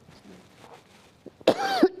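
A woman coughing into her fist: after a quiet stretch, two sharp coughs about a second and a half in.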